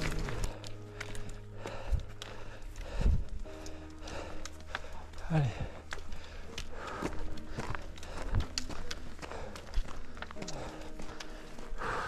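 Footsteps and trekking-pole taps of runners hiking up a dirt and gravel mountain trail, with soft background music of held chords underneath.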